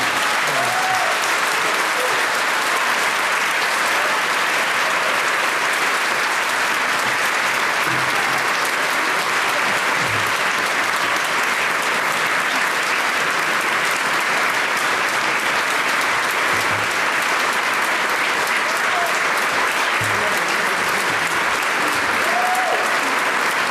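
A large audience applauding steadily, the applause breaking out just as the music stops.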